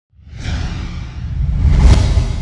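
Whoosh sound effect for an animated title logo, with a deep rumble. It swells out of silence and builds to its loudest near the end.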